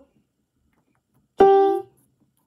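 Electronic keyboard playing a single short note about one and a half seconds in, starting sharply and dying away within half a second.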